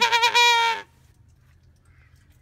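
A small red plastic toy trumpet blown in a wavering, buzzy tone that steadies in pitch and then cuts off abruptly less than a second in.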